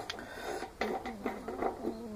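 Faint handling noise: a few light clicks over quiet room tone.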